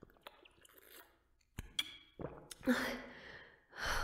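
Quiet close-up breaths and small mouth clicks from a woman, with a soft knock about one and a half seconds in and a breathy whispered word in the second half.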